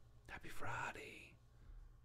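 A man's faint whispered voice, lasting about a second.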